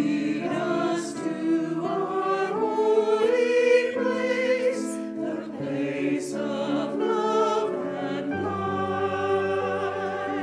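Mixed church choir singing a slow Advent anthem in parts, with keyboard accompaniment; a low bass note comes in and is held from about eight seconds in.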